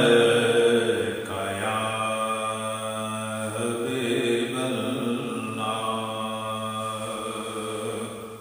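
A man's voice chanting a naat, an Urdu devotional poem in praise of the Prophet, in long, drawn-out melodic held notes. It is loudest at the start and steady after about a second.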